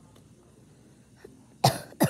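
A boy coughing: quiet at first, then a sharp, loud cough about a second and a half in, with a second cough starting right at the end.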